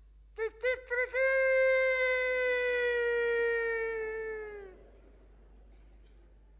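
A rooster crowing once: three quick short notes, then one long held note that sinks slightly in pitch and fades out.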